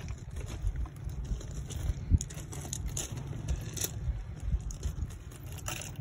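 Irregular crunching and scraping of loose gravel underfoot, with a sharper click about two seconds in, over a steady low rumble of wind on the microphone.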